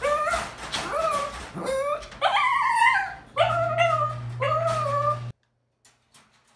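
A crated puppy whining and howling: about five drawn-out, wavering cries, cutting off suddenly a little after five seconds.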